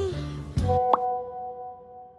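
End of a TV series' theme song: the last sung note slides down, then a low thud and a sharp plop-like chime about a second in, whose tones ring on and fade away.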